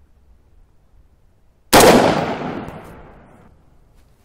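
A single rifle shot about two seconds in, firing a hand-loaded round; the report dies away over roughly a second and a half as it echoes off the surrounding woods.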